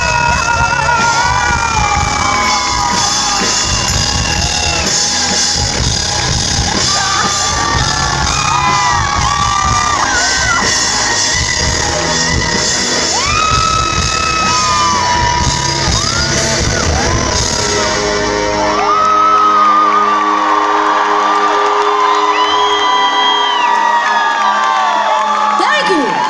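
A live rock band heard from within the crowd, with drums, bass, guitar and high sliding vocals, over crowd whoops and yells. About two-thirds of the way through, the drums and bass stop, leaving a held chord under the voices.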